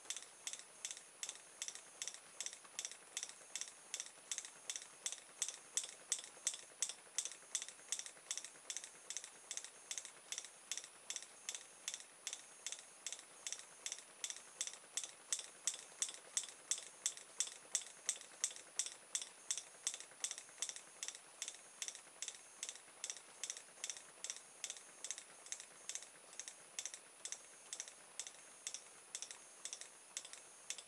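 Open-air reed switch from an LED drawer light snapping open and shut about three times a second as it pulses the speaker-wire coil of a homemade pulse motor, each click sharp and even, some stretches louder than others. The contacts spark at every break, with no flyback diode fitted to take the back-EMF spike.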